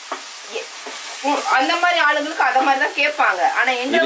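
Chopped tomatoes sizzling in a frying pan as they are stirred with a spatula. From about a second in, a woman's voice sounds over the frying and is the loudest thing.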